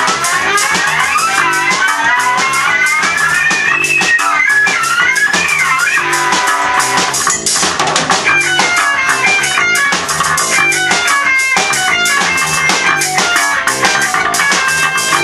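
A rock band playing loud without vocals: electric guitars over a drum kit, with a guitar melody sliding up and down over steady, busy drumming.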